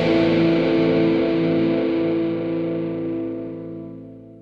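The final chord of an indie pop song ringing out on distorted electric guitar, held steady and then fading away over the last couple of seconds.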